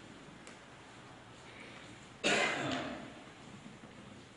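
A person giving one short throat-clearing cough about two seconds in, against quiet room tone.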